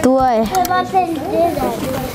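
A child's high-pitched voice talking, the words not made out.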